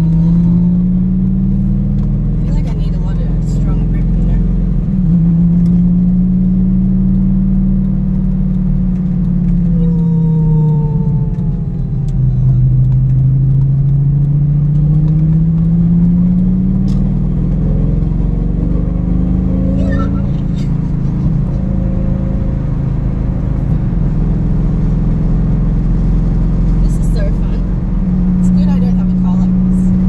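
Lamborghini engine heard from inside the cabin while driving, its pitch rising and falling several times as the car speeds up and eases off, over a steady low road rumble.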